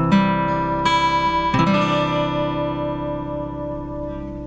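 A Cadd9 chord strummed on an acoustic guitar from the A string, struck twice in the first two seconds, then left to ring and slowly fade.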